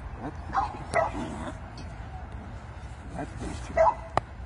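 A 10-week-old puppy giving short high calls while it bites and tugs a padded bite sleeve, a few about a second in and a louder one near the end.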